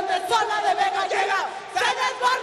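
Many voices shouting and whooping together in festive cries, with swooping high calls over a few held tones.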